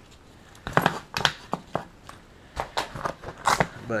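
Think Tank Photo Airport Security V2 roller camera bag being handled, its nylon fabric rustling while its back compartment is opened, with a string of short sharp clicks and scrapes from its straps and fittings.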